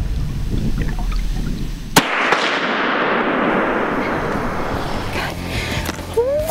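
A single muzzleloader shot about two seconds in: one sharp report, then a long rolling echo that fades away over about three seconds.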